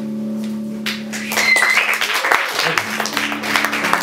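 The last acoustic guitar chord rings out, then a small audience breaks into applause about a second in, with a short high cheer shortly after it starts.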